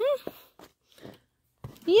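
A woman's voice: a hummed "mm-hmm" trailing off at the start and an exclaimed "yay" beginning near the end, with a few faint clicks and a short silence between.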